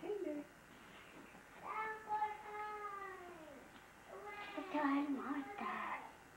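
A young baby vocalizing: one long, high call about two seconds in whose pitch slides down at the end, then shorter babbling voice sounds near the end.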